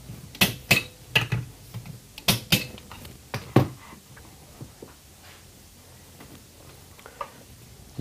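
Wrench torquing the cylinder nuts of a two-stroke kart engine down to 12 newton metres: a run of sharp metallic clicks and clinks, about eight in the first three and a half seconds, then only faint small ticks.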